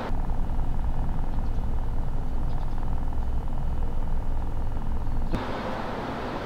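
Low, muffled vehicle engine rumble, cut off abruptly about five seconds in.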